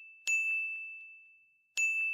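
A bright, bell-like ding struck twice, about a second and a half apart, each strike ringing on a single high tone and fading away.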